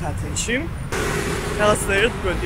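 A woman talking in short bursts over street traffic, with a vehicle going past from about halfway through and a steady low wind rumble on the microphone.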